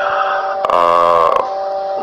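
A man's drawn-out hesitation sound, a held 'uh' lasting under a second in the middle, at one steady pitch. A faint steady whine runs underneath.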